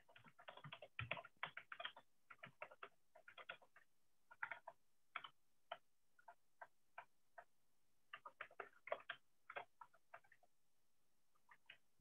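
Faint computer keyboard typing: irregular runs of soft key clicks, thinned by a video-call microphone.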